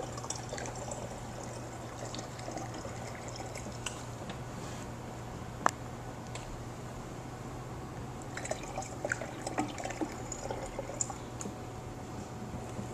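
Deionized water poured slowly from a plastic jug through a funnel into a flame-polishing machine's electrolyte tank: a faint trickle of filling liquid, topping the potassium hydroxide electrolyte up toward the full line. A steady low hum runs underneath, with one sharp click a little before the middle and a few light clicks near the end.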